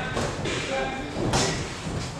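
Boxing gloves landing punches in sparring: a few sharp smacks and thuds, the loudest about a second and a half in, over voices around the ring.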